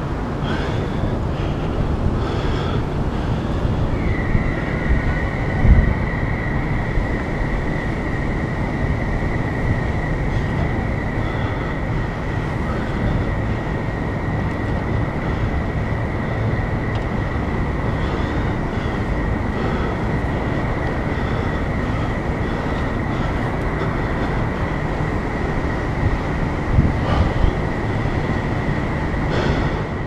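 A continuous high-pitched alarm tone starts about four seconds in and holds steady on one pitch, over a constant rumbling background. There are a few knocks, one about six seconds in and a cluster near the end.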